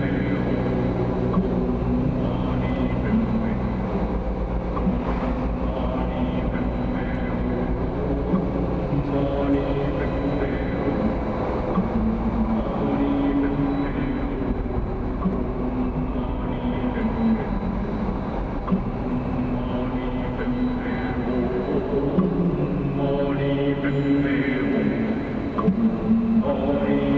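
Car cabin noise, a steady low road-and-engine rumble, with music playing over it: held melodic notes that step from pitch to pitch every second or two.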